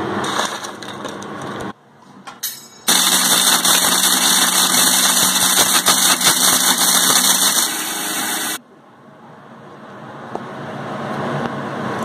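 Electric mixer grinder running, grinding crisp wheat roti pieces into a coarse powder. It starts about three seconds in and cuts off suddenly about five and a half seconds later.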